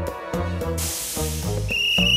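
Background music with a steady beat, then a short hiss and a shrill plastic whistle blast: a single steady high tone that starts near the end and is held.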